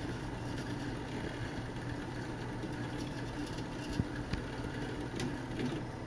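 Small drive motor of a Department 56 animated gondola ski lift running steadily with a low hum as it pulls the gondolas along the cable, with a few light clicks about four and five seconds in.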